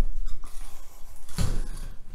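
A dull footstep thump about one and a half seconds in as a person steps up onto the bathtub edge, amid light rustling of clothing and shower curtain.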